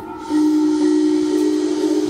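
Live experimental music: about a third of a second in, a loud hiss swells up together with held tones that step upward in pitch twice.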